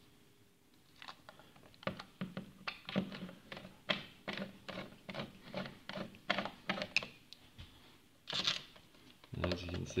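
Screwdriver driving the fixing screws of a USB double wall socket faceplate into its plastic back box: a run of small, irregular clicks and scrapes of metal on screw and plastic.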